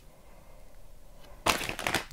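A plastic candy bag crinkling as it is picked up and handled, starting suddenly about one and a half seconds in.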